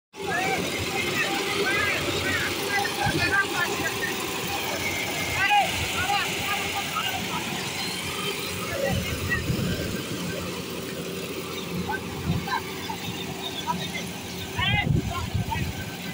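Iseki combine harvester's engine running steadily, a constant hum under men's voices.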